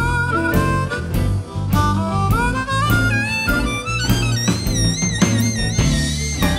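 Harmonica solo played cupped against a microphone, its notes bending up and down, over a blues band with electric guitar, bass and a steady beat of about two strokes a second.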